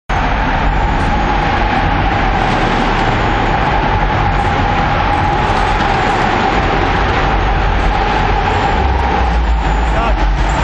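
Loud, steady noise of cars running in the stadium arena, with a held high tone running through it that dies away near the end.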